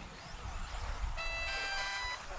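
A short electronic jingle of steady beeping tones at several pitches over the track PA, starting about a second in and lasting under a second, over low outdoor rumble. It marks the finish of the race.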